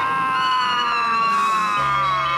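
Cartoon soundtrack: one long held tone with overtones, sliding slowly down in pitch and dropping more steeply near the end.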